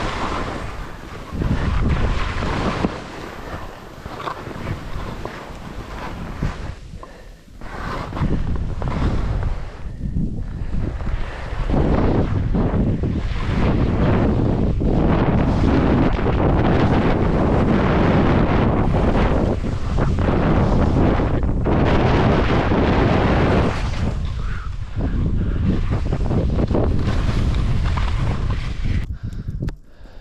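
Wind rushing over an action camera's microphone, with skis hissing and scraping through snow on a fast downhill ski run. The rushing surges and dips throughout, then drops off sharply about a second before the end as the skier comes to a stop.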